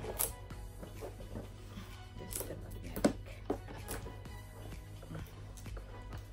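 Background music under several sharp knocks and scrapes of a large cardboard box being handled, the loudest about three seconds in, as its lid is lifted open.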